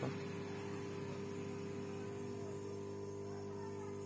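Quick 850A SMD rework station's air pump running at its lowest airflow setting: a steady, even hum with no hiss.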